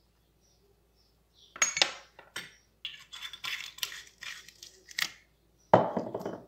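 Kitchen things being handled and set down, making clinks and clatter, starting about a second and a half in, with a louder knock near the end.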